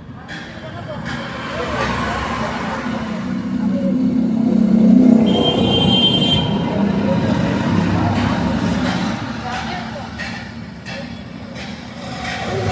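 A road vehicle passing close by: its noise builds to a peak about five seconds in, then fades away.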